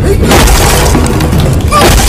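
Edited-in film fight sound effects over a bass-heavy music track: a heavy boom-like hit at the start and another hit near the end.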